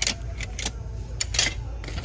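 Metal kitchen utensils clinking and rattling together in a wire bin as a hand rummages through them, with a series of sharp clinks, the loudest about one and a half seconds in.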